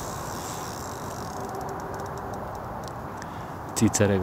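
Steady outdoor background noise with a run of faint, short, high ticks starting about a second and a half in.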